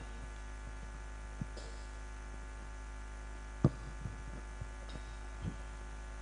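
Steady electrical mains hum from a stage PA sound system, with a few faint knocks, the sharpest a little past halfway.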